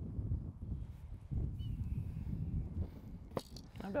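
Wind buffeting the microphone outdoors, a steady low rumble, with a single faint click about three and a half seconds in.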